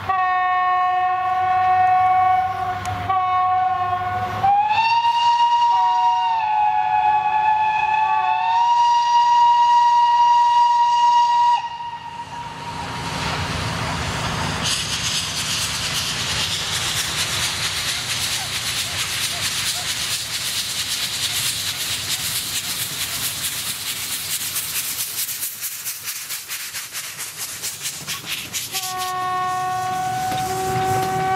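Steam locomotive whistle: a blast, a short break, then a long blast of about seven seconds that steps up in pitch, all in several tones at once. After it stops, the loud hiss and chuff of the locomotive working its train past, the chuffs quickening, and the whistle sounds once more near the end.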